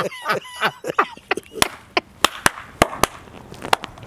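Men's hearty laughter trailing off into breathy gasps, followed by about six sharp knocks or claps spaced over the next couple of seconds.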